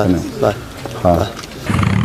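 Afghan-built car's engine coming on near the end with a sudden, loud, low, steady rumble, after a few spoken words.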